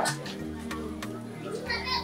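Soft background music with sustained low notes, under faint voices of children at play.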